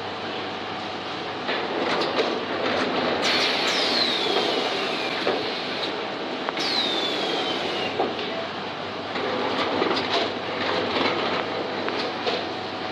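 PKC-800 two-step book case making machine running with a steady clatter and scattered clicks and knocks. Twice, about three and six and a half seconds in, there is a hiss of air lasting one to two seconds, with a whistle that falls in pitch.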